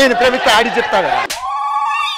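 A man speaking, then about one and a half seconds in a steady electronic ringing tone cuts in and holds.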